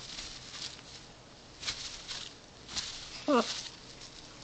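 Blue-and-gold macaw rubbing against and thumping a blanket in male mating motions: a few irregular scuffing rustles of feathers and cloth. Near the end a person gives a short 'ugh'.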